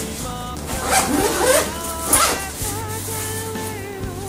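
Zipper of a fabric camera bag being pulled open in a couple of quick rasping strokes, over background music with held notes.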